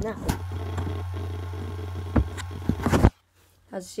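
Acer Aspire laptop running close to the microphone: a steady low hum with a hiss over it and a few knocks, cutting off abruptly about three seconds in.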